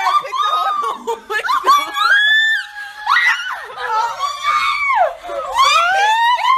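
Several women shrieking and laughing in high, sliding voices, the shrieks overlapping.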